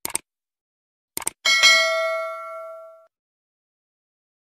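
Subscribe-button animation sound effect: two quick mouse clicks, two more about a second later, then a bright notification bell ding that rings out and fades over about a second and a half.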